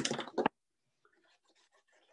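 Faint scratching and rustling of paper being cut and handled, with a short louder burst in the first half second.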